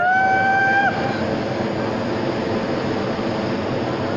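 A hot air balloon's propane burner firing with a loud, steady rushing roar. Over the first second, a high, level call or shout is held and then stops.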